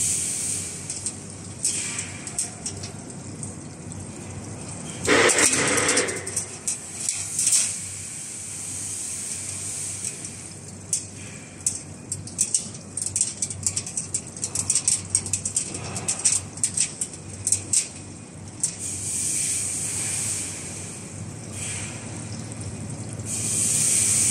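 Automatic chain link fence machine running in manual mode, weaving a zigzag wire spiral into the mesh: a steady hiss of machinery with many quick metallic clicks and rattles of wire. A louder noisy burst comes about five seconds in.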